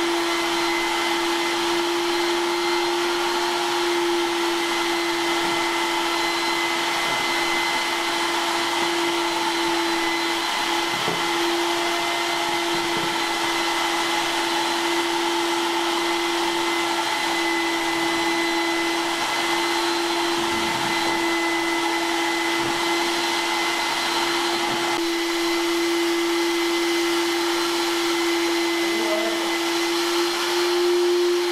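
Wet/dry shop vacuum running steadily, its motor giving an even hum with a constant pitch, as its floor squeegee nozzle sucks up standing sewage floodwater from a hardwood floor.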